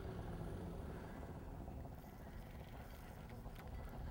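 Faint, steady low rumble with no distinct event.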